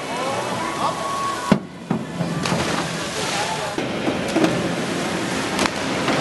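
A voice calls out briefly, then after a cut the steady rush and splash of water in an echoing indoor diving pool, with a few faint knocks.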